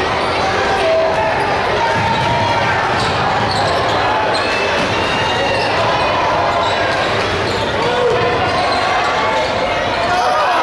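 Basketball game sound in a gymnasium: a basketball bouncing on the hardwood court under steady crowd voices.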